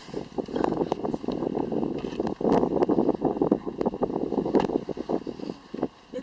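Wind buffeting the camera microphone: a rough, uneven rumbling noise that rises and falls in gusts.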